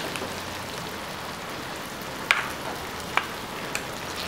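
Low, steady sizzle from food in a kadhai on the stove, with a few sharp clicks of a spatula against a steel bowl in the second half.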